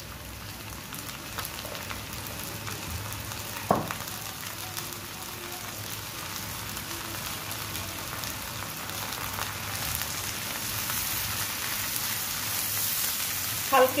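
Small shrimp frying in hot oil in a nonstick pan: a steady sizzle that grows gradually louder, with one sharp knock about four seconds in.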